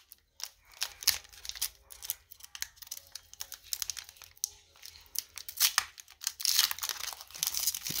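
Foil Pokémon booster pack being torn open and crinkled by hand: scattered crackling tears and crinkles that grow thicker near the end.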